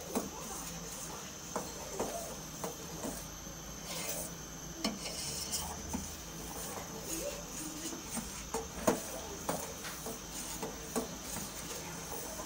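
A metal spoon stirring thickening milk in a steel saucepan, scraping and clinking against the pan at irregular intervals.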